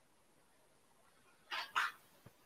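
Near silence, then two short, sharp animal calls in quick succession about one and a half seconds in.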